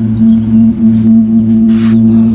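A loud, steady low hum with a higher overtone, unchanging throughout, and a short hiss near the end.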